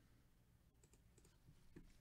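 Near silence broken by a few faint computer clicks about a second in, with a soft thump near the end.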